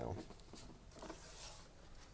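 Faint rustling and handling of Pokémon trading cards and hands moving over a wooden table, soft and uneven, with a slightly louder brush about halfway through.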